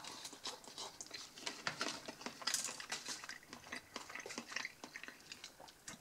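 A person chewing a mouthful of sausage salad (strips of Lyoner sausage and Emmentaler cheese in dressing), heard as a run of small irregular wet clicks and smacks.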